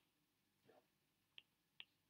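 Near silence, broken by a soft scrape and then two faint short clicks in the second half: a stylus tapping and writing on a tablet screen.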